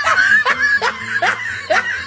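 Snickering laughter: a string of short laughs that each rise in pitch, about two or three a second. It is a dubbed-in comedy laugh effect.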